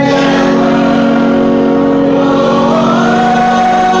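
Live gospel music holding a long sustained chord, with one line sliding upward in pitch about three seconds in.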